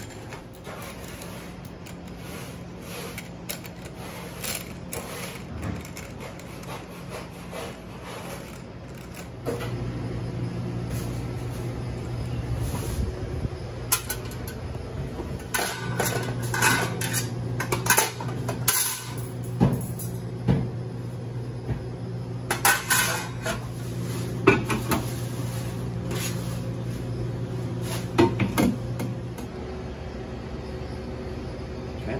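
Cloth rubbing on a wire fryer rack, then metal clanks and clatters as the wire basket-support racks are set down into the stainless steel fry pots, with scattered sharp knocks through the second half. A steady low hum sits underneath from about ten seconds in.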